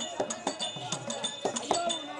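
Tamil therukoothu street-theatre music: small metal hand cymbals clinking in a quick beat, about four strikes a second, their ringing carrying between strokes, over drum strokes and a wavering melody line.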